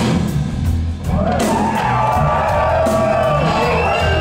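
Live blues-rock band. The music thins out briefly about a second in, then an electric guitar lead plays long, bending, wavering notes over bass and drums.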